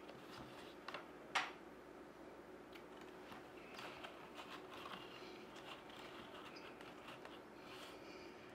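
Faint clicks and rustles of flat reed basket spokes being handled, with two sharper clicks about a second in, over a low steady room hum.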